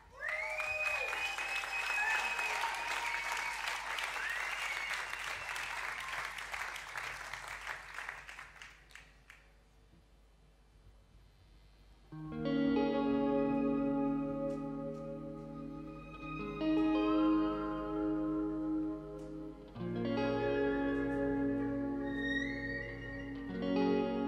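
Audience applause with a few whistles, fading out over about nine seconds. After a short lull, a band starts a slow song with held instrumental chords that change every few seconds.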